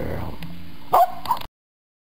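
Shetland sheepdog giving two short, sharp barks about a second in.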